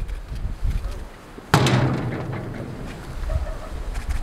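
A single loud metallic clank about one and a half seconds in, with a short ringing decay, from a green steel bar gate being worked open. Crowd voices murmur underneath.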